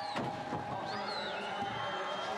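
Arena background music over a murmuring crowd, steady in level, with one high tone gliding down about a second in.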